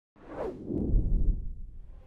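Whoosh sound effect for an animated logo: a swoosh that swells with a deep rumble over about a second, then fades away.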